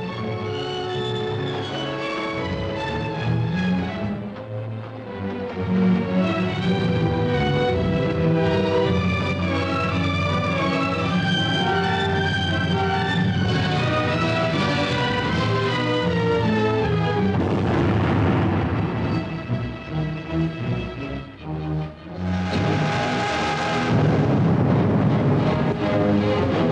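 Orchestral film score with a dense, sustained texture. A rushing noise swells over it about eighteen seconds in, and again more loudly near the end.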